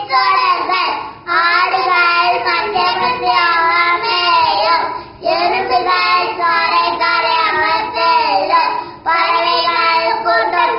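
Two young boys singing a song together in unison, in long phrases with a short breath roughly every four seconds.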